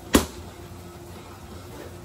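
A single sharp smack of a gloved strike landing on a hand-held focus mitt, just after the start, during pad work on a combination.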